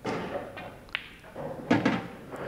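Pool cue striking the cue ball, then sharp clicks and knocks as the cue ball comes off a cushion with check side and runs into the pack: one click about a second in, more near the end.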